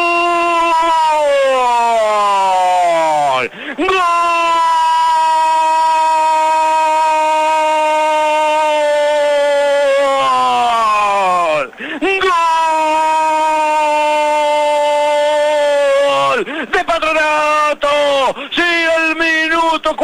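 Radio football commentator's long drawn-out goal cry, "¡Gooool!", held on one steady pitch in three long breaths, each falling away in pitch as the breath runs out. In the last few seconds it breaks into shorter shouts.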